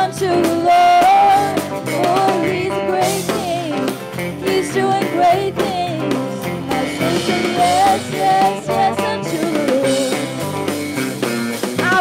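Live worship band playing a song: women singing lead and harmony over drum kit and electric guitars.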